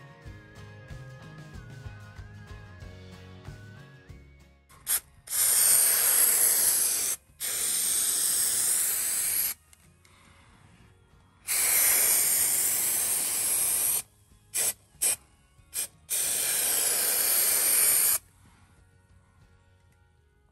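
Aerosol can of spray adhesive spraying in four long bursts of about two seconds each, with a few short spurts between, starting about five seconds in. Soft music plays in the first few seconds before the spraying starts.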